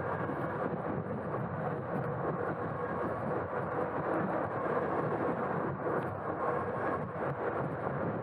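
Riding noise from a Super73 S2 electric bike moving at a steady speed: tyre rumble on rough, cracked asphalt and wind buffeting the handlebar camera. A faint steady whine runs underneath.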